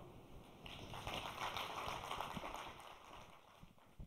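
Audience applause in a hall, fairly quiet, starting about half a second in and fading away near the end.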